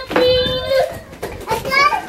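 A young child's high-pitched voice, wordless: one long drawn-out call, then a shorter rising call near the end.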